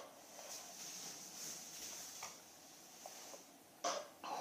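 Red plastic party cups being restacked into a pyramid on carpet: a few faint, light plastic taps and clicks as the cups are set on one another, with a sharper click near the end.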